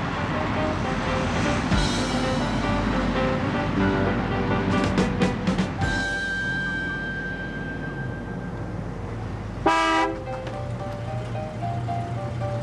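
Background score music throughout, with a short car horn toot just before the ten-second mark.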